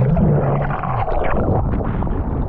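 Muffled underwater rush of churning whitewater and bubbles around an action camera as a breaking wave passes over, with a low wavering tone in the first second. About a second in the sound brightens into splashing as the camera comes back up through the surface.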